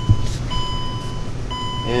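Vehicle electronic warning chime beeping over and over, about one long beep a second. There is a short knock just after the start.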